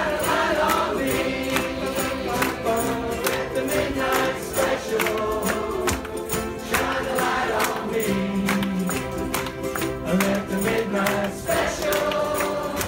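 A large ensemble of ukuleles strummed together in a steady rhythm, with many voices singing along as a group.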